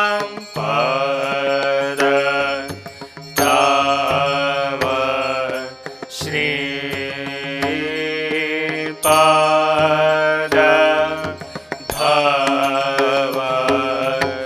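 Devotional arati hymn: voices chanting a melody over sustained instrumental accompaniment, in phrases a few seconds long with brief breaks, and light percussive strikes.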